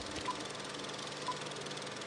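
A steady, quiet hiss-like background wash with a faint short high beep about once a second, left over after the soundtrack music has ended.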